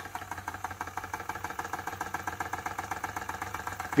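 Wilesco D305 toy steam fire engine's model steam engine running steadily on compressed air, with a fast, even beat of exhaust puffs and mechanical ticking.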